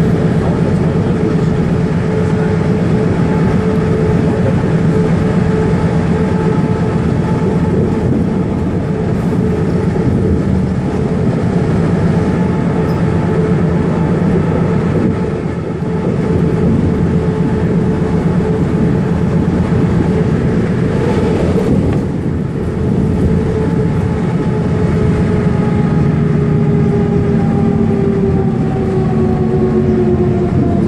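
Inside a Van Hool articulated city bus under way on a highway: continuous drivetrain whine over road and tyre noise. The whine drops in pitch near the end.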